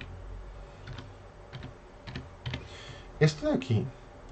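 Computer keyboard being typed on, scattered keystrokes entering numbers. Near the end a man's voice comes in, louder than the typing.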